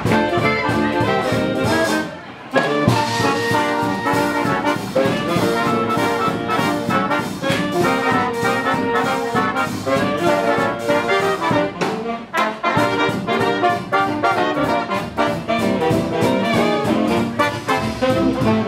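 Live big band playing swing jazz, with trumpets, trombones and saxophones over drums and bass. The band drops out briefly about two seconds in and comes back in together.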